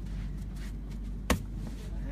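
A single sharp smack a little over a second in: a spinning back kick landing.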